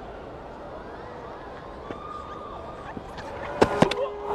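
Steady ambience of a cricket ground, then two sharp thuds near the end, a fraction of a second apart: a fast bowler's spiked back and front foot landing at the crease in his delivery stride.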